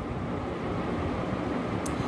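Steady low hum and hiss of background room noise, with one faint click near the end.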